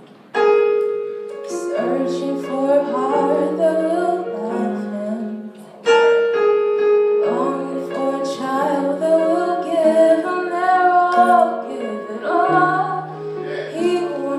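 A woman's solo voice singing a slow church song through a microphone, accompanied by sustained chords on a keyboard piano, with fresh chords struck about half a second in and again near the middle.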